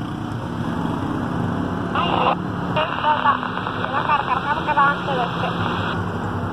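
Baofeng 888S handheld two-way radio hissing with static, a short burst about two seconds in, then a steady rush of static with a garbled voice breaking up in it: a weak signal at the limit of its range.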